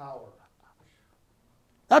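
Speech only: a short faint voice at the start, a pause of near silence, then a man's voice starts loudly near the end.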